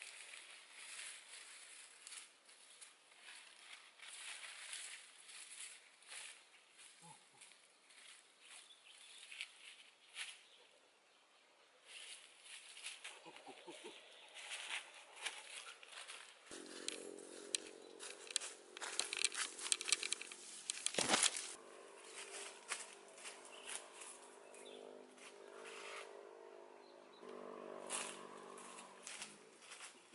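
Dry leaves, twigs and stems crackling and rustling as a person moves through undergrowth and picks cassava leaves by hand. From about halfway through, a low steady hum with a distinct pitch sits underneath.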